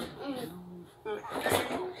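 A child's voice, quieter than her talk on either side, in two short stretches.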